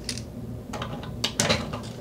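A few sharp clicks and taps of hard plastic and metal as the toilet seat's hinge bolts are fastened back down over the bidet's mounting plate.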